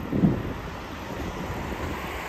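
Street noise of wind rushing on the microphone and road traffic, steady after a short loud sound in the first half second.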